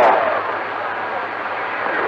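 CB radio receiver static: a steady even hiss of band noise on channel 28 (27.285 MHz) in the gap between transmissions, with a faint low hum under it.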